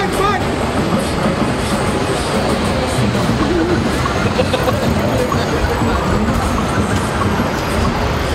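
Loud, steady ambience of a busy city street: a crowd of many voices chattering over a constant low rumble.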